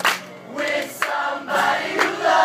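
Live acoustic music: acoustic guitars strummed in a steady rhythm, with several voices singing together.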